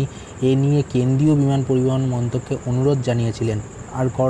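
A man's voice speaking in drawn-out, held phrases, with a faint, steady, high-pitched pulsing tone underneath.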